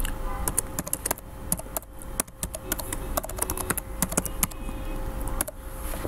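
Typing on a computer keyboard: quick, irregular runs of key clicks with short pauses, stopping about half a second before the end.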